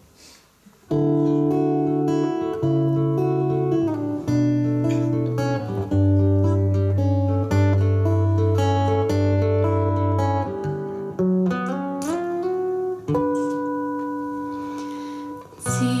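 Acoustic guitar playing a solo introduction, a picked melody over held bass notes that step downward, starting about a second in with a brief break near the end. Women's voices begin singing the first line just as it ends.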